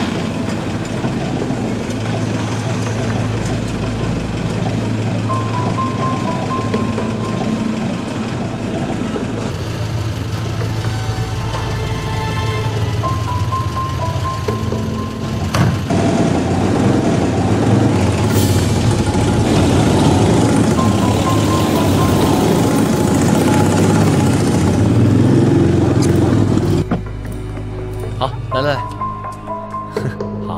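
Background music score, steady and building, louder in the second half and dropping away near the end.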